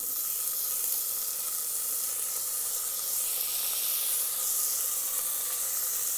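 Chopped onion dropped into hot oil and tempering spices in an Instant Pot's stainless steel inner pot on sauté mode. A steady frying sizzle starts suddenly as the onion lands.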